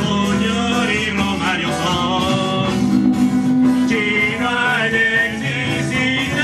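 A group of men singing together into microphones, backed by a live guitar and bass guitar.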